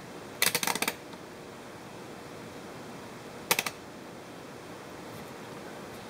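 Rotary selector dial of a digital multimeter turned by hand: a quick run of clicks through its detents, then a second, shorter run about three seconds later, as the meter is switched over to its ohms range. A steady faint hiss runs underneath.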